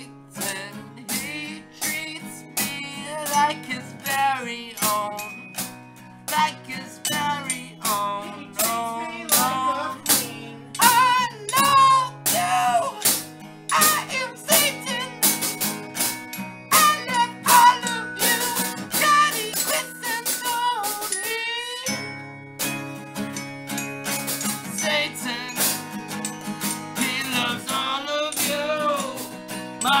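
An amateur band jamming: a man singing into a microphone over guitar, with xylophone and drums struck throughout. The playing breaks off for a moment about two-thirds of the way through, then picks up again.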